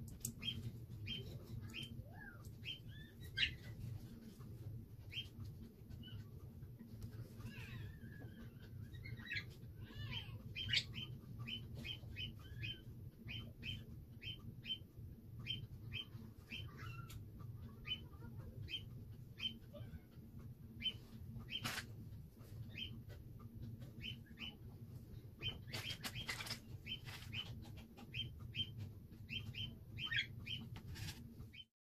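A bird chirping over and over in short high notes, with a few warbling calls about a third of the way in, over a steady low hum.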